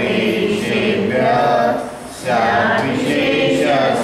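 Voices chanting a verse in long sung notes, with a short pause for breath about two seconds in.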